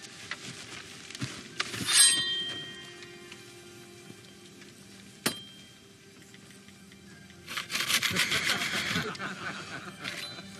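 Film sound effects of a katana: a rising swish that ends in a bright ringing of the blade about two seconds in, and a single sharp crack about five seconds in. Near the end comes a long crackling, rustling burst of wood and branches giving way, with a short laugh over it, under a quiet film score.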